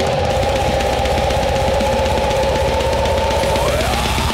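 Blackened death metal instrumental passage: a long held note sustained over fast drumming, the note sliding up in pitch near the end.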